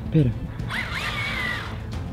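Small electric motor of a remote-control monster truck whining in a burst of about a second, its pitch rising and wavering as the truck is driven briefly in the water.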